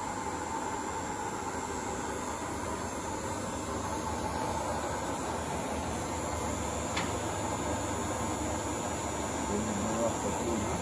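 Steady mechanical running noise with a faint steady tone in it, and a single click about seven seconds in.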